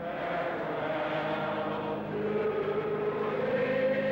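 A large crowd of people singing together in slow, drawn-out held notes.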